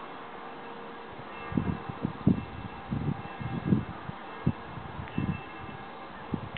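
Distant church bells ringing, their tones hanging on steadily. From about a second and a half in, a run of irregular low thumps and rumbles on the microphone sits over them.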